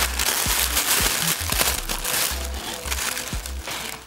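Plastic wig packaging crinkling and rustling as it is handled.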